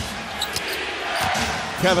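A basketball dribbled on a hardwood court, a few faint bounces over the steady noise of an arena crowd.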